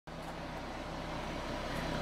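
2013 Ford Mustang's 3.7-litre V6 idling steadily, heard from behind the car.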